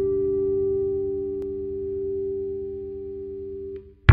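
Bluesville "Surf King" electric bass guitar with several notes ringing together, left to sustain and fade slowly, then muted just before the end.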